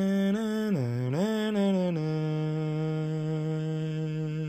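A male voice humming a wordless tune: a few short held notes, a swoop down in pitch and back up about a second in, then one long held low note.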